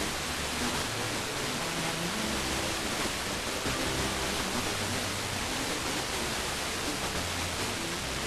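Steady hiss of FM radio static from a receiver tuned to 94.0 MHz wideband FM: the weak, distant broadcast has faded down into the noise, with only faint traces of its audio showing through underneath.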